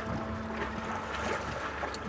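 Boat engine running steadily at idle, with wind rumbling on the microphone.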